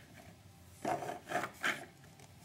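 Handling noise: something being rubbed and scraped, with three short scraping bursts in the second half.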